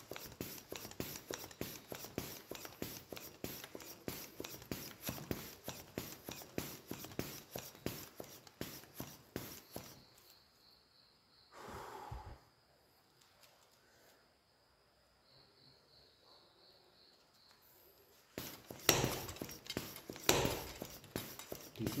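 High-pressure hand pump charging a PCP airgun: a long run of evenly spaced air strokes. It goes quiet for several seconds in the middle, then resumes near the end.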